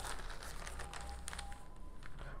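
Faint rustling and crinkling of newsprint as newspaper pages are turned and flattened on a desk.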